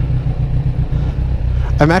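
A fuel-injected, liquid-cooled 1,043 cc motorcycle engine with an Akrapovič exhaust idling in neutral, a steady low rumble with a fast flutter. A man starts speaking near the end.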